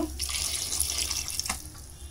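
Water poured from a jug into an aluminium pressure cooker full of goat trotters, the stream thinning and trickling off to a stop.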